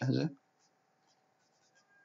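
Faint light taps and scratches of a stylus writing numbers on a pen tablet.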